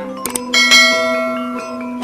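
Background music of held tones and bell-like chimes, with a loud struck chime about half a second in that rings and slowly fades.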